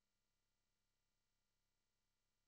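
Near silence: only a very faint, steady electronic hiss.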